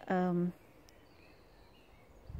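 A woman's voice for the first half second, then faint outdoor garden ambience with a few faint, short bird chirps.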